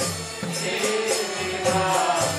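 Devotional kirtan: chanting voices over a steady rhythm of ringing hand cymbals (kartals), striking about three times a second.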